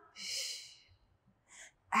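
A woman's forceful hissing "shh" exhale, just under a second long, as she lifts her hips into a table-top position on the effort of a Pilates move. A shorter, fainter breath follows about a second and a half in.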